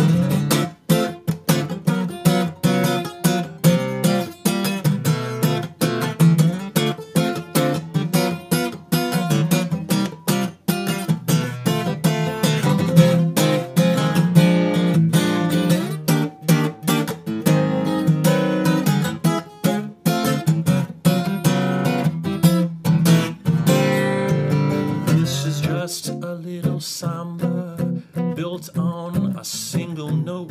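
Solo acoustic guitar strummed in a steady samba/bossa nova chord rhythm, an instrumental passage with no singing.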